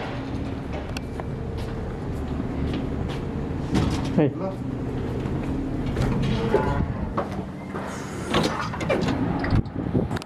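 Indistinct voices talking in a building hallway over a steady low hum, with scattered clicks and knocks. Near the end, an exit door opens onto the outside.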